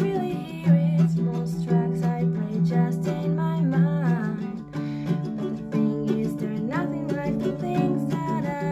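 Ukulele strummed in chords with a woman singing over it.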